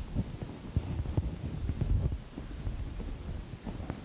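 Irregular low thumps and rumbling from people moving near the microphone, with a few sharper knocks among them.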